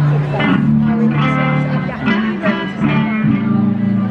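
Acoustic guitar strummed in a steady rhythm, chords about twice a second over ringing bass notes.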